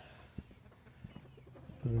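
Faint outdoor background with distant bird calls and a couple of light taps; a man's voice starts near the end.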